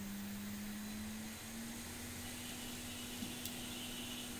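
A hot-air rework station's blower running with a steady hum and hiss, its pitch stepping up slightly about a second and a half in, while it heats a MOSFET being reseated on a graphics card.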